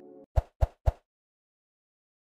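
Three quick pop sound effects, about a quarter second apart, then silence.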